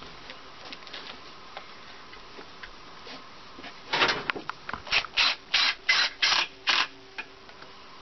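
Cordless drill driving a screw into plywood: a brief run about four seconds in, then a quick string of about six short pulses, roughly three a second, as the trigger is feathered.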